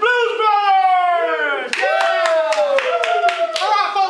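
A drawn-out man's vocal call that slides down in pitch, then a second one about halfway through, with quick hand claps joining under the second call.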